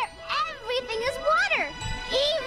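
Cartoon soundtrack: a child character's high voice sliding up and down in pitch over tinkling music.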